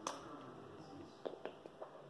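Faint clicks from a felt-tip marker being handled in the fingers: one sharp click at the very start, then a few lighter clicks and taps in the second half.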